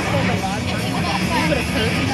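Several people's voices overlapping and calling out, with a steady low hum underneath.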